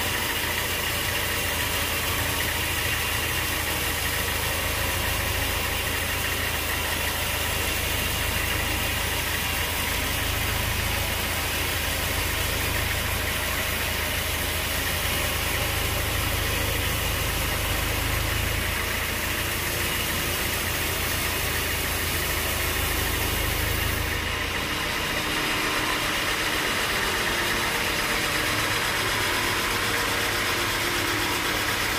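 Band sawmill running and cutting lengthwise through a large teak log: a steady mechanical drone with the hiss of the blade in the wood. A low hum under it drops away about three-quarters of the way through.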